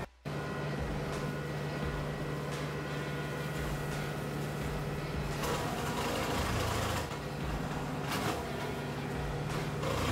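Brown Tree Cutter heavy-duty rotary cutter, with four blades spun off the tractor's PTO, running behind the tractor engine as a steady hum. From about halfway through, the protruding blades strike the tree dozens of times a second, adding a loud, rough chipping rattle as the wood is chewed away.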